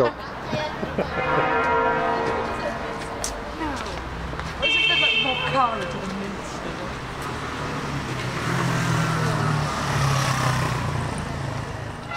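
Cathedral bells ringing changes under city street traffic, with a car passing about eight to eleven seconds in.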